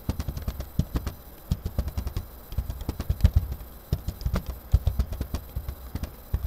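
Typing on a computer keyboard: a quick, irregular run of keystroke clicks with dull thumps as a short phrase is typed.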